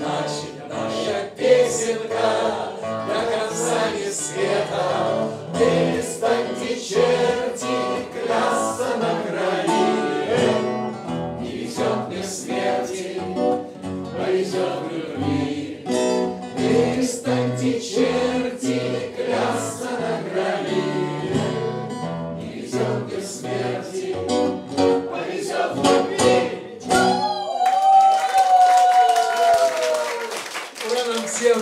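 A group of voices singing a song in unison, in Russian, to a man's strummed acoustic guitar. Near the end the strumming stops and a long final note is held, sinking slightly in pitch.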